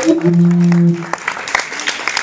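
Audience clapping, with a loud steady low note held for under a second near the start.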